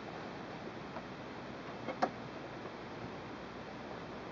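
Quiet room hiss with one sharp click about two seconds in: thread being snapped in the sewing machine's side-mounted thread cutter.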